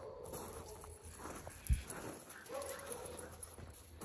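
Siberian husky moving on loose gravel: faint crunching and scraping of paws, with two short whines and a single low thump about halfway through.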